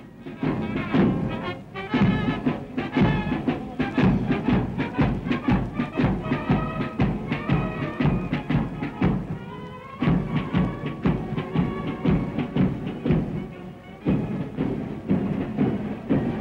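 Military band playing a march: brass melody over a steady, even drum beat.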